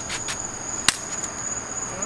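Crickets trilling in one steady high note, with a single sharp click a little under halfway through.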